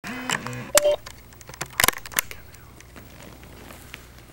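A few short beep-like tones, then sharp clicks and knocks of a camcorder being handled and set in place, over a low steady hum.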